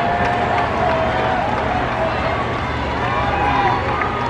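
Ballpark crowd: many spectators' voices calling out and talking at once, a steady din with nobody's words standing out.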